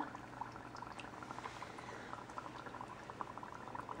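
Dry ice bubbling in water in a small cauldron: a faint, steady stream of small pops and fizzing as the fog forms.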